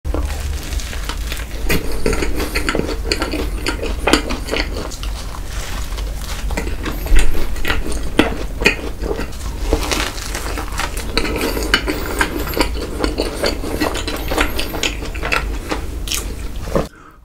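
Close-miked biting and chewing of a crisp waffle sandwich filled with cream: many short, crackly crunches throughout, over a steady low hum.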